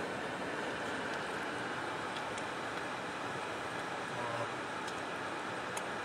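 Steady car noise, an even hum and hiss with no distinct events, heard from inside a car in slow traffic.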